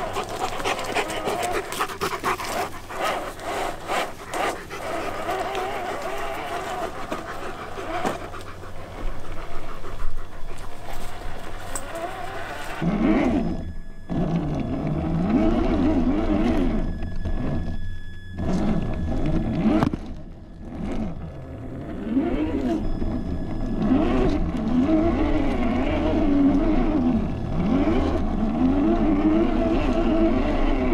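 Traxxas TRX-4 scale crawler's electric motor and geared drivetrain whining close up, the pitch rising and falling with the throttle, with brief stops. Before that, for about the first dozen seconds, a German Shepherd panting close by among clicks and rustling.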